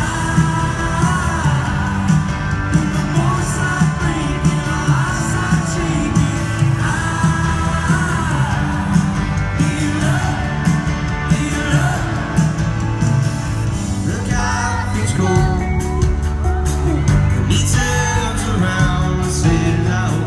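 A live band playing a song in a large hall, with electric and acoustic guitars, drums and singing, recorded from within the crowd.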